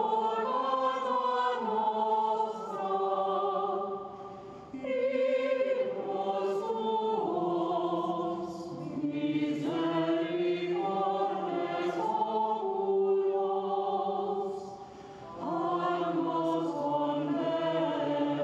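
Unaccompanied Gregorian chant sung by a group of voices, held notes moving stepwise in long phrases, with brief breaths about four and a half seconds in and again near fifteen seconds.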